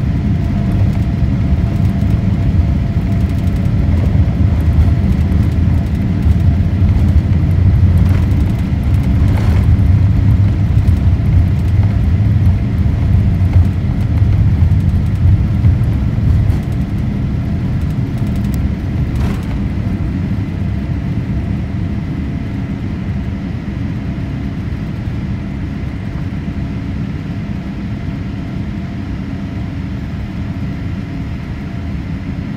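Inside the cabin of a Boeing 787-8 on its takeoff roll: the engines at takeoff thrust over a heavy rumble of the wheels on the runway, building until about halfway through, when the rumble drops away at liftoff and a lighter, steadier engine and air sound carries on into the climb. Two brief knocks, one before and one after liftoff.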